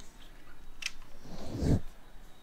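Handling noise from a handheld camera being moved: a sharp click a little before one second in, then a louder low rustle and rumble near the end.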